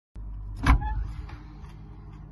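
A refrigerator door pulled open with a single loud thump as the seal lets go, followed by a few light rattles from items on the door shelves. Under it runs a steady low hum.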